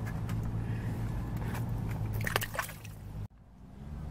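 Brief water splashing and sloshing at a hole in the ice as a released herring goes back into the water, over a steady low hum. The sound cuts off suddenly a little over three seconds in.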